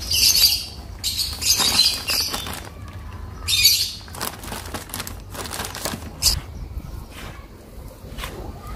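Plastic potting-mix bag rustling and crinkling in bursts as a rubber-gloved hand scoops soil out of it and works it into a heap, with a few short, sharper scrapes in the second half.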